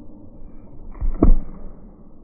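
A single short whoosh with a low thud about a second in, as of something swung fast and close past the microphone.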